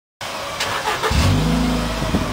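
Ford Fiesta Mk6 Zetec S four-cylinder engine running through a Cobra Sport stainless steel cat-back exhaust. The sound starts faint and rough, and the low, steady exhaust note comes in about a second in.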